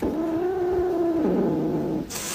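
Domestic cat giving one long, drawn-out yowl, held at one pitch and then dropping lower a little over a second in.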